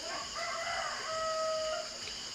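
A rooster crowing once: a single crow of about a second and a half that ends on a held, steady note.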